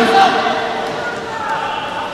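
A volleyball bounced on the hard court floor by a server preparing to serve, over steady crowd noise in a large hall.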